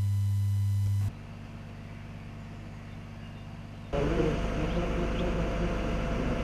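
A steady low hum for about a second, then faint outdoor background. About four seconds in, a road roller's engine starts up loudly, running steadily as the roller compacts fresh hot asphalt.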